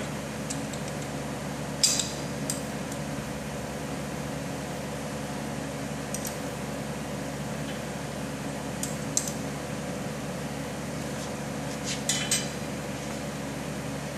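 A few light metallic clinks and clicks, scattered with a small cluster near the end, as hands adjust fittings on a steel split-frame pipe-cutting machine, over a steady background hum.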